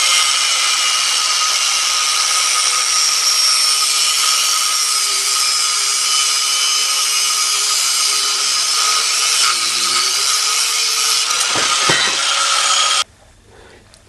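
Angle grinder with a cutting disc cutting through stainless steel tube: a steady high whine with a slight wobble in pitch partway through. It cuts off suddenly about a second before the end.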